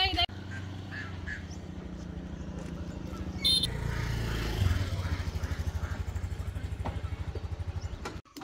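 A motorbike engine idling close by with an even, rapid putter. A brief high-pitched squeak cuts in about three and a half seconds in.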